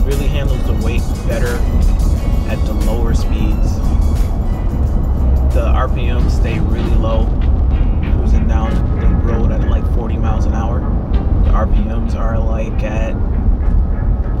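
Background music with a wavering sampled voice, laid over a steady low drone of road and engine noise inside the cab of a Ford F-150 towing a heavy trailer at cruising speed.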